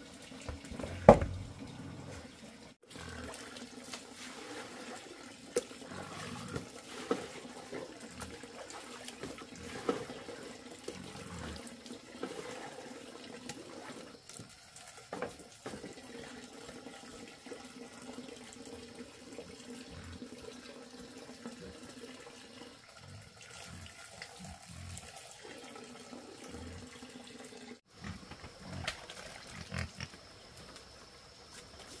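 Wet feed mash being scooped from a metal pot and poured, with a sharp clank about a second in and scattered knocks and splashes over a steady low hum.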